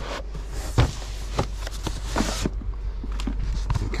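Boxed reel-to-reel tapes being rummaged and slid out of a cardboard box: a scraping, rustling sound for about two seconds with a few sharp knocks, over a low steady hum.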